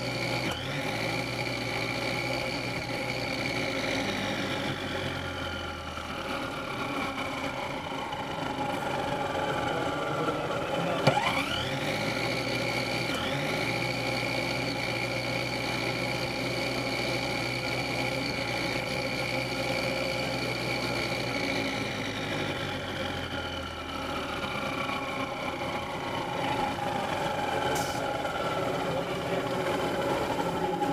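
Electric motors on a competition robot whining at a steady high pitch. The whine winds slowly down, spins sharply back up with a click about a third of the way in, holds steady, then winds slowly down again, the way a motor-driven wheel spins up and coasts down.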